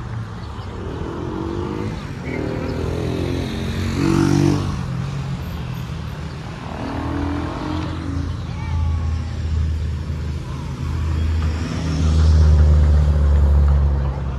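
Motor vehicle engines passing close by, with one louder pass about four seconds in and another near the end. People's voices sound faintly under the traffic.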